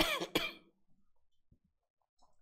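A man clearing his throat: two short, loud coughs less than half a second apart.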